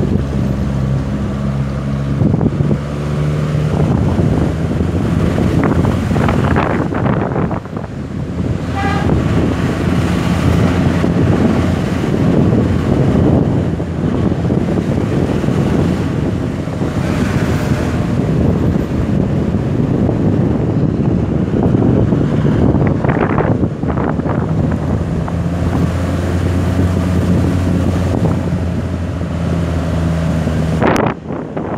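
A vehicle's engine running steadily as it drives along a road, with wind buffeting the microphone.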